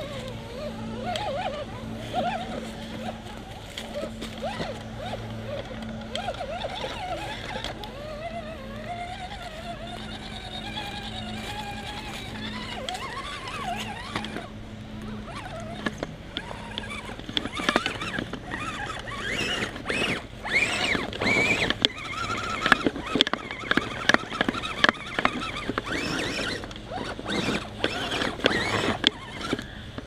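Radio-controlled scale rock crawler working over loose logs and boards. Its electric drive motor whines, rising and falling in pitch with the throttle. From about halfway on, the tires and chassis knock and clatter many times against the wood.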